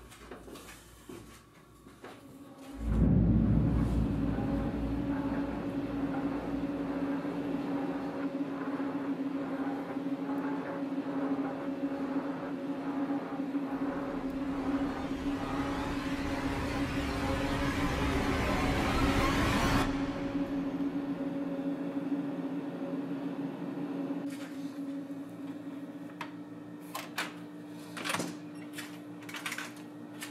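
An ominous sustained horror drone starts suddenly about three seconds in, with a steady low hum under a hiss that swells and rises until it cuts off abruptly about two-thirds of the way through. A quieter low tone lingers afterwards, with a few sharp clicks near the end.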